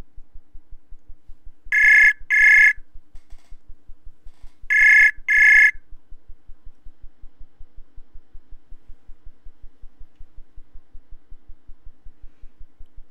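Outgoing-call ringback tone of a web video-chat app: two double rings, each a pair of short high beeps, about three seconds apart, while the call waits to be answered. A faint rapid low pulsing runs underneath.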